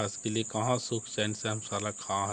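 A man talking, over a steady high-pitched insect drone that runs without a break.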